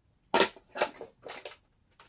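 Stiff white cardstock handled and flexed in the hands, giving four short, sharp crackles spread over two seconds.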